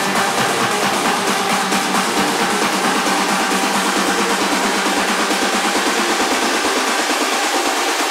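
Techno playing in a DJ mix, with the bass filtered out so only the percussion and synths above the low end are heard: a breakdown before the kick and bass return.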